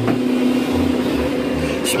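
Counter-rotating brush (CRB) carpet agitator running with a steady motor hum as it is pushed over the carpet, scrubbing in the pre-spray.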